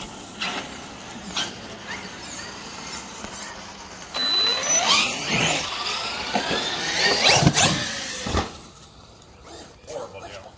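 A brushless electric motor of a large Traxxas RC monster truck whining up and down in pitch as the truck speeds up and slows. It is loudest from about four to eight and a half seconds in, with sharp clicks mixed in.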